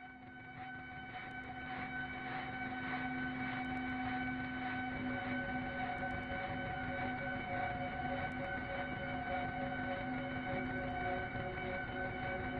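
Background film score: a sustained drone of several held tones, fading in from silence over the first couple of seconds and then holding steady.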